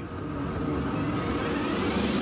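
A rushing whoosh sound effect of a television serial, a haze of noise that swells and brightens to a peak near the end.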